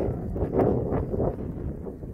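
Wind buffeting the microphone, a low rumble, with crunching footsteps in snow about two to three times a second.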